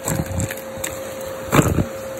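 Vacuum cleaner running with a steady motor whine through a rectangular cardboard hose nozzle, sucking small debris such as beads, plastic caps and balloon scraps off carpet. Two rattling clatters as the debris is pulled in, one at the start and a louder one about a second and a half in.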